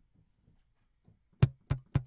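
Sampled electric bass from Native Instruments Session Bassist: Prime Bass, played in its slap-and-pop articulation. After a pause of over a second, three short, sharp slapped notes come in quick succession, about a third of a second apart.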